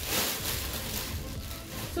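Soft background music under rustling and crinkling from a fabric baby bag and its clear plastic wrapping as they are handled.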